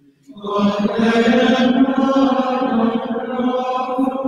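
A single voice chanting one long sung line of liturgical chant, beginning about a third of a second in and holding a steady pitch with little movement.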